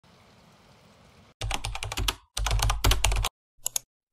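Rapid clicking in two dense bursts of about a second each, starting about a second and a half in, then a brief third burst near the end, after a faint hiss.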